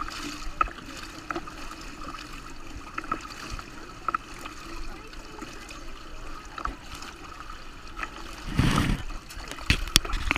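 Pool water lapping and gurgling in the overflow gutter at the pool wall, with small splashes throughout. Near the end a swimmer's strokes splash close by, louder and sharper.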